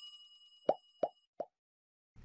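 Subscribe-button animation sound effects: the fading ring of a bell-like chime, then three short cartoon pops about a third of a second apart.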